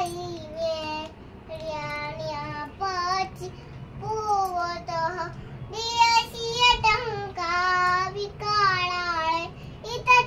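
A little girl's high voice chanting a devotional mantra in a sing-song, in short phrases broken by brief pauses.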